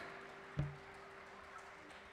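Faint steady electrical hum from the stage sound system during a pause in the music, with one soft thump about half a second in.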